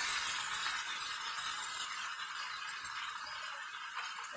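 Chicken and potato pieces sizzling in a hot cast-iron skillet, a steady hiss, with light clinks of metal tongs against the pan as the pieces are turned.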